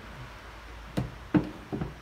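Sharp handling knocks and clicks as hands work the leads and crimped spade terminals on a small 12 V sealed lead-acid battery: a click about a second in, a louder knock just after, then a couple of lighter taps.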